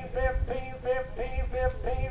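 Auctioneer's bid-calling chant into a microphone: a fast sing-song run of repeated syllables held at a nearly steady pitch, about five a second.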